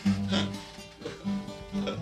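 Acoustic guitar being strummed, chords ringing as the introduction to a song just before the singing starts.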